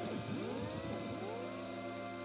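Electric guitar through delay and looping effects pedals: sustained looped tones with many swooping pitch glides bending down and back up as the pedals are worked, thinning out near the end.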